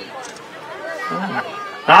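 Only speech: softer voices talking in the background during a pause, then a man's louder voice comes back in near the end.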